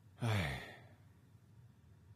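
A man's short, breathy "huh? hmm" sigh about a quarter second in, falling in pitch.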